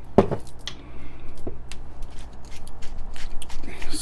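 Scattered light clicks and taps of a metal spoon and containers against a ceramic bowl and countertop while a salad dressing is adjusted and stirred. The strokes come irregularly, several a second.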